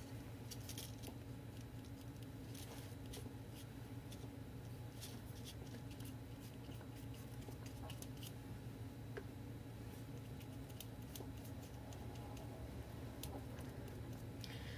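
Soft scattered clicks, taps and rustles of paper and craft materials being handled at a work table, over a steady low room hum.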